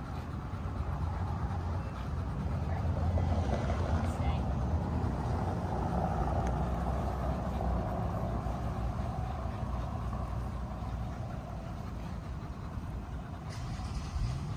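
Street traffic: a passing vehicle's noise swells through the middle and fades, over a steady low rumble.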